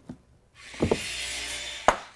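A short musical transition sting: after a brief quiet, an even hissing swell with faint tones under it lasts about a second and a half and ends in a sharp click.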